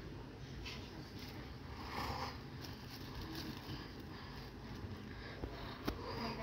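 Quiet, steady low hum inside a passenger train carriage standing still, with no running or track noise, and one sharp click near the end.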